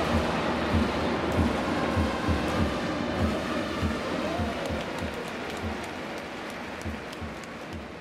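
Baseball stadium crowd noise with a cheering section's drums beating steadily about three times a second; it all fades down over the last few seconds.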